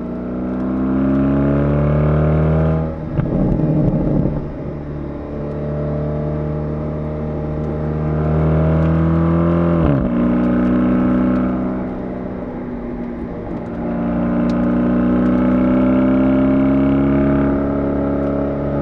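BMW Alpina B8 Gran Coupe's twin-turbo V8 pulling hard under acceleration. Its pitch climbs, breaks at a gear change about three seconds in and climbs again, then falls sharply as the revs drop about ten seconds in, and rises once more near the end. Tyre and road noise lie underneath.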